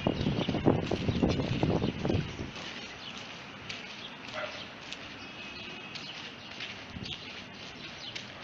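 Outdoor street ambience: a loud low rumble with short knocks for the first two and a half seconds, then a quieter steady hiss with a few faint bird chirps.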